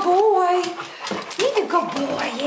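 Bed-bug detection dog whining in high, wavering tones, twice, after it has indicated a find to its handler.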